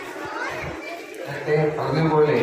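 A man speaking into a microphone over a loudspeaker, softly at first and louder from about one and a half seconds in, with children's voices in the background.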